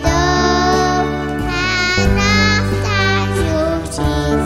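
A child's voice singing a CCB (Congregação Cristã no Brasil) hymn over instrumental accompaniment of sustained chords and long held bass notes.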